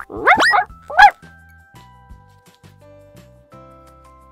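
Two short, rising puppy yelps in the first second, a high-pitched voiced cry for a toy dog reacting to the shot, the second one louder; then soft background music.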